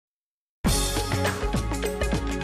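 Silence for just over half a second, then opening theme music starts abruptly with a quick drum beat and sustained melodic notes.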